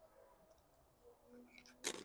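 Near silence, then one brief crisp crunch near the end as a salsa-dipped tortilla chip is bitten.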